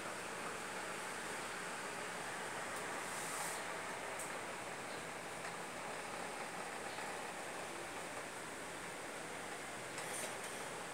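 Steady hiss of background room noise, with a few faint brief rustles about three and four seconds in.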